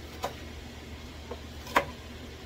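Chef's knife chopping wild ramp greens on a cutting board: three short knocks of the blade against the board, the loudest near the end.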